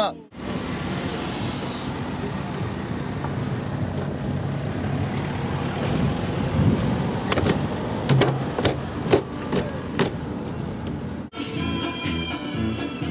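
Vehicle running, a steady rumbling noise with a few sharp clicks or knocks between about seven and ten seconds in; it cuts off suddenly near the end.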